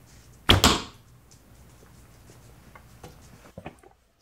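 A traditional bow shot with a Dacron B55 string: the string's release and the arrow's hit on the close target come a split second apart, about half a second in. A few faint clicks follow near the end.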